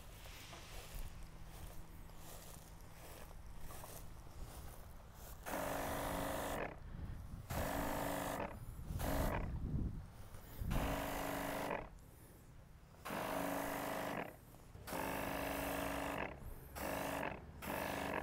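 Weed sprayer triggered in short bursts, seven times from about five seconds in, each spray about a second long with a steady hum and hiss: spot spraying weeds in the lawn.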